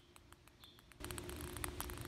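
Quiet outdoor background with faint, fast ticking and a couple of short high chirps; a low hum comes in about a second in.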